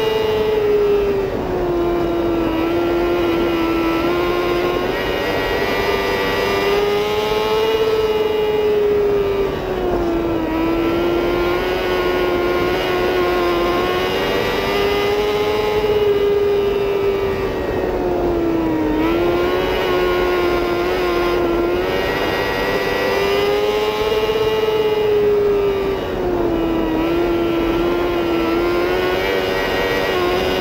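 Mini sprint race car's engine heard onboard, running hard at high revs the whole time. The pitch drops as the driver lifts for each turn and climbs back on the straights, in a lap rhythm of about eight seconds.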